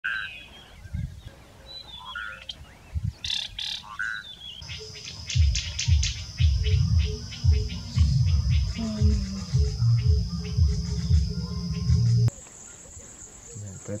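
Field recording of a few short, chirping bird calls. Then a steady high-pitched insect drone with repeated loud, low thumps, which gives way suddenly near the end to a higher, steady insect drone.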